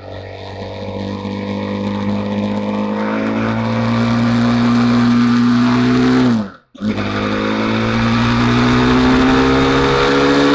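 BMW G310R's single-cylinder engine pulling under steady acceleration, its pitch slowly rising and its level building over the first few seconds. The sound cuts out for a moment about two-thirds through, then the engine carries on rising.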